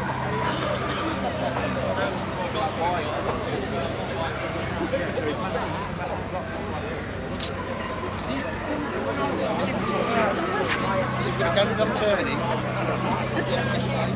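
Car engines idling in a queue: a steady low hum that weakens in the middle and comes back stronger near the end, under the chatter of a crowd.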